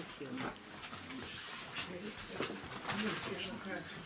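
Several people talking at once, too indistinct to make out, in a small room.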